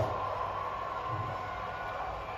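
Steady low whir of indoor spin bikes being pedalled, with faint low pulses.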